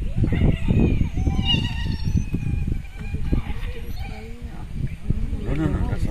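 People's voices talking in low tones over a steady low rumble, with a brief high, squeaky call about a second and a half in.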